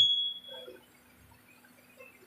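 The end of a man's voice through a microphone and PA, leaving a high ringing tone, typical of microphone feedback, that fades out within about half a second. Then quiet, with a faint steady low hum from the sound system.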